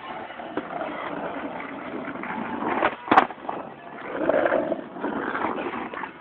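Skateboard wheels rolling over asphalt in a steady rumble, with one sharp clack of the board about three seconds in.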